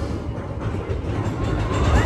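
A ride boat running along its flume track in a dark ride: a steady low rumble, with the ride's soundtrack music fading out at the start.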